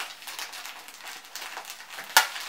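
A small pocket pack of tissues being opened and handled: a soft, irregular crinkling and rustling of its wrapper.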